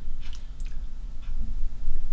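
Video camera's zoom and autofocus motor whirring as the lens refocuses on a close subject: a low steady hum with a few faint clicks.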